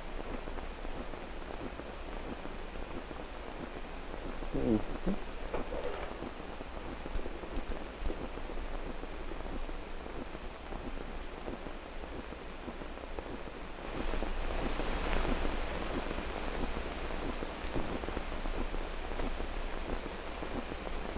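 Steady hiss from an old 16 mm film soundtrack, with a brief murmured word or two about five seconds in. The hiss gets louder about fourteen seconds in.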